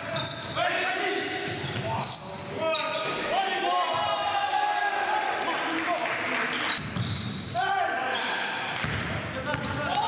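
Live basketball game sound: sneakers squeaking on the hardwood floor and the ball bouncing on the court, with indistinct shouts from the players.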